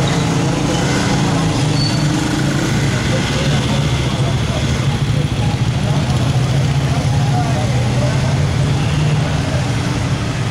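A vehicle engine idling steadily, with people talking in the background.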